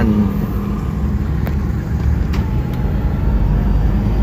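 Steady low rumble of a car's engine and tyres on the road, heard from inside the cabin while driving, with two faint ticks in the middle.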